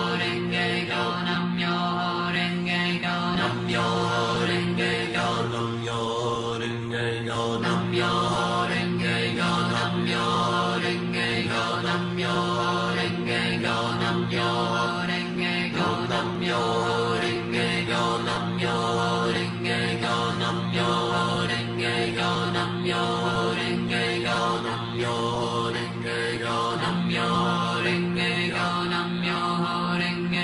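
Nichiren Buddhist chanting: voice chanting continuously on a held, nearly unchanging pitch with a regular repeating rhythm.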